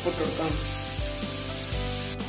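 Sliced onions frying in oil in a stainless steel pan, a steady sizzling hiss. Background music with soft regular beats plays along.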